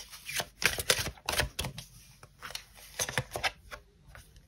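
A deck of oracle cards being shuffled by hand: a quick, irregular run of card flicks and snaps that thins out toward the end.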